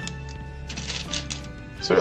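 Plastic building bricks clicking and clattering as they are handled over a metal tray and fitted together, in a few quick clusters, over steady background music.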